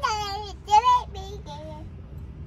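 A young boy's high voice in a few drawn-out, sing-song phrases, loudest about a second in. A steady low hum of the car's cabin runs underneath.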